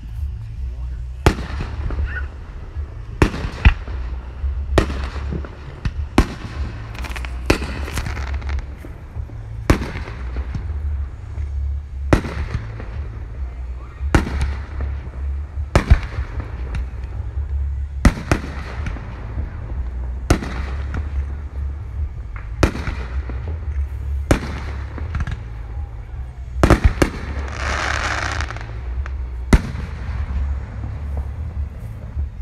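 Fireworks display: aerial shells bursting with sharp bangs every second or two, some in quick pairs, over a steady low rumble. Near the end a hissing stretch of about two seconds.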